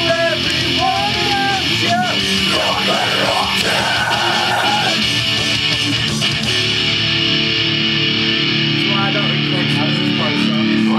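A recorded rock song with guitar playing loudly, with voices singing along over it in the first seconds.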